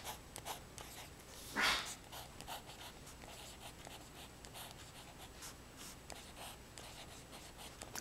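Metal pen nib scratching on card as words are written: a run of short, faint strokes, with one louder rasp about a second and a half in.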